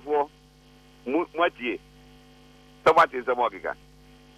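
Short bursts of a man's speech heard through a telephone line over a radio broadcast, sound cut off above the upper mid-range, with a steady electrical hum running underneath.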